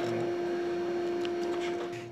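Surgical radiofrequency vessel sealer's generator sounding its activation tone, one steady unbroken beep, while energy is delivered through the sealing forceps.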